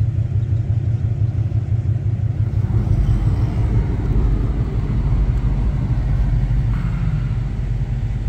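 Steady low rumble of a vehicle driving along a snow-covered road: engine and tyre noise.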